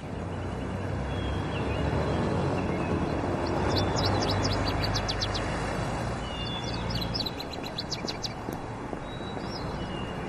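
Street ambience: a minibus engine running with a steady low hum under traffic noise, and small birds chirping in two short runs, about four seconds in and again near the end.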